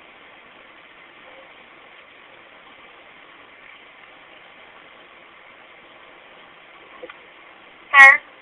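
Faint, steady hiss of a recorded telephone line, with one faint click about seven seconds in.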